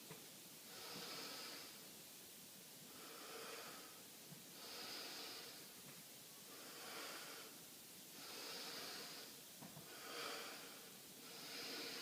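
A man breathing slowly and evenly through his nose as he recovers after a set of goblet squats. Each breath is a soft rush of air, coming about every one and a half to two seconds.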